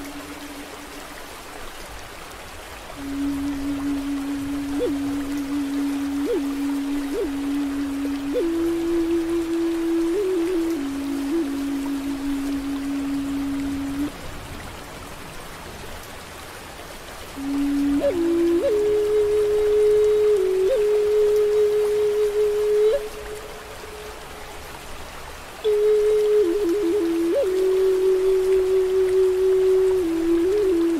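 Native American flute playing slow, long held notes with quick grace-note flicks, in three phrases broken by pauses of a few seconds. The second and third phrases sit higher. Steady rain and a flowing stream hiss beneath throughout.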